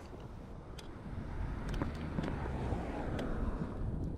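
An oncoming car passing, its road noise swelling and fading over a few seconds, with wind on the microphone and a few faint ticks.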